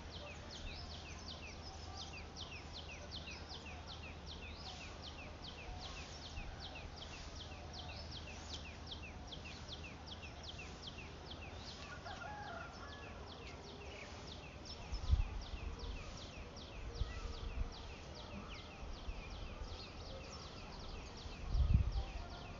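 Outdoor field ambience: short high chirps repeated evenly about three times a second throughout, with a few low rumbles on the microphone about fifteen seconds in and again near the end.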